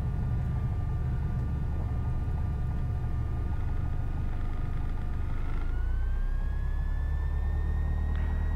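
Piper PA-28-180's four-cylinder Lycoming engine running at low power in the cabin as the aircraft rolls out after landing, a steady low drone. A thin whine above it rises in pitch about five and a half seconds in and then holds.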